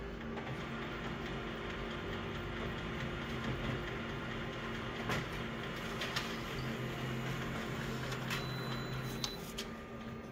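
Office multifunction colour copier printing a full-colour copy: a steady mechanical whirr and hum. A few light clicks come from about five seconds in, with a short high tone about eight seconds in.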